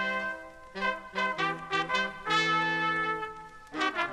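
Instrumental introduction of a 1960s–70s Bajan spouge record, led by horns: a held chord cuts off, then a run of short notes, a long held chord, and more short notes near the end.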